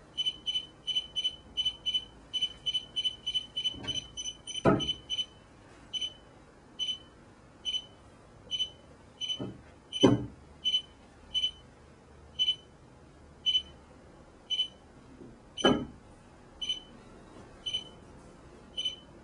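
Short high electronic beeps from a phone running a Bluetooth signal-detection app. They come about three a second for the first five seconds, then slow to roughly one and a half a second. A few dull knocks of the phone being picked up and set down on the wooden table come in between, the loudest about ten seconds in.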